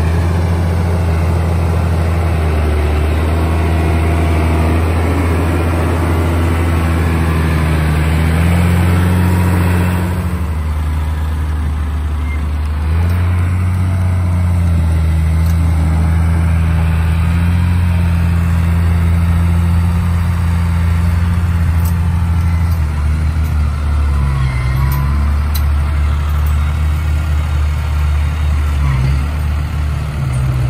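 Diesel engines of New Holland farm tractors running steadily. The sound drops about ten seconds in, picks up again a few seconds later and grows more uneven near the end.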